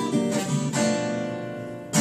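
Two Taylor acoustic guitars playing a slow blues: a chord is strummed near the start and left ringing, fading away, before the next chord is strummed near the end.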